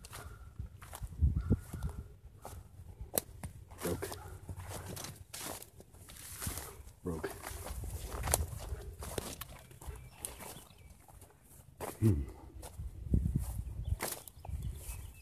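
Footsteps through tall grass and brush, with stems and twigs rustling and swishing at irregular intervals. A man gives a short "hmm" near the end.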